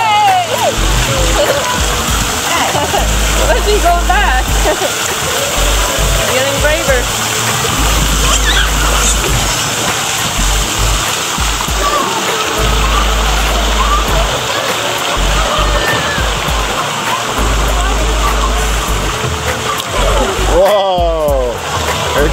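Running and splashing water in a shallow water-park play pool, with children's voices and calls heard throughout.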